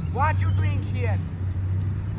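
Dodge Charger's engine running with a low steady rumble as the car rolls slowly away, with a voice speaking over it in the first second.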